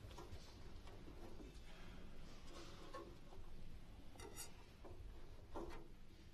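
Quiet ambience of a large seated hall with faint rustling and shuffling from the audience and players, including a brief rustle about four seconds in and a slightly louder one near the end; no music is playing yet.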